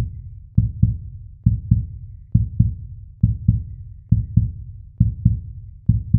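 Heartbeat sound effect: low double thumps, lub-dub, repeating at a steady pace a little faster than once a second.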